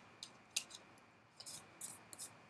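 Oracle cards being handled while a card is drawn from the deck: a few faint, short, crisp slides and flicks of card stock.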